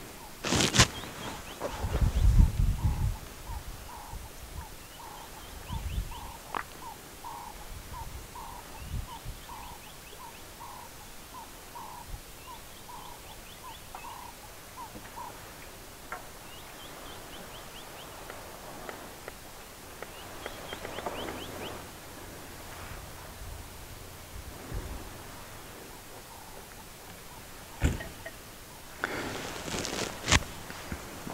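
Birds calling in the bush: one repeats a single mid-pitched note about twice a second for some thirteen seconds, while another gives short, rapid series of higher notes several times. Low thumps sound a couple of seconds in and again briefly later.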